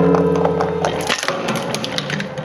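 Steel oil filters being crushed between the cutter discs of a twin-shaft shredder: repeated crunching and cracking of the metal cans. A loud low drone runs under the first second and then stops.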